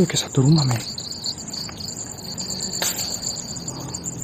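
Night insects, likely crickets, calling as a steady high chorus. A short murmured voice sounds in the first second, and there is a single click about three seconds in.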